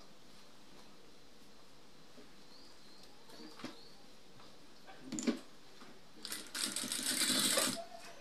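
Industrial sewing machine running in a short burst of about a second and a half near the end, stitching a fabric neck facing. Before it, a couple of soft fabric-handling sounds as the piece is placed under the presser foot.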